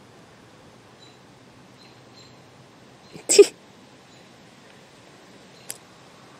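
Faint steady outdoor background with a few faint high chirps. About three seconds in comes one short, sharp vocal sound, not a word, followed near the end by a small click.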